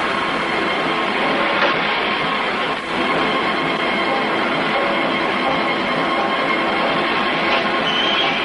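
Film trailer soundtrack: a steady, dense, harsh wash of sound with faint held tones, dipping briefly about three seconds in.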